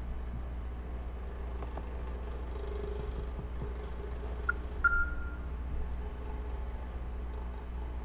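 Steady low electrical hum with faint background noise on the audio line. Two short high beeps about halfway through, the second one lingering briefly.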